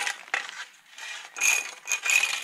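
A red spirit level dragged over sandy concrete paving slabs. It scrapes and clinks with a faint metallic ring, in several short strokes, the loudest about one and a half seconds in.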